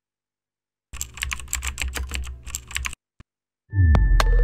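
Typing on a computer keyboard, a designed sound effect: a quick, irregular run of key clicks lasting about two seconds, then one lone click. Just before the end, a louder sound with a low falling sweep starts.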